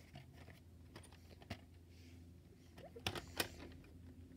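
Faint clicks and taps of a plastic VHS cassette being handled, with a louder cluster of clacks about three seconds in, over a low steady hum.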